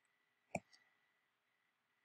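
A single computer mouse click about half a second in, against near silence.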